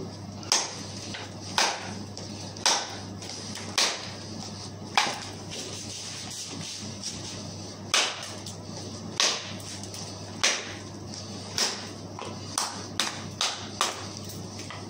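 A fixed-blade knife (Fiskars Pro Builder) hacking into the end of a wooden chair leg to sharpen it into a stake: sharp chopping strikes of blade on wood, about one a second. Near the end they come quicker, four in close succession.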